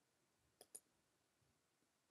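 Two quick faint clicks of a computer mouse button, a little over half a second in, against near silence.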